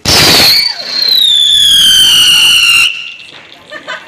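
Whistling firecracker going off on the ground: a sudden loud burst of hiss, then a shrill whistle that glides steadily down in pitch for about two seconds and cuts off abruptly.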